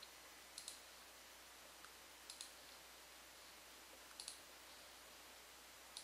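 Near silence: faint room hiss with pairs of small, sharp clicks repeating about every two seconds.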